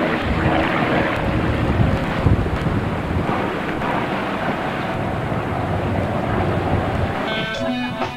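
Wind rushing over the camcorder microphone, with a steady low rumble throughout. Guitar music comes in near the end.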